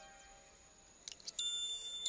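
A small metal locket clicking as it is pried open about a second in, followed by a high, bell-like chime note that starts and rings on.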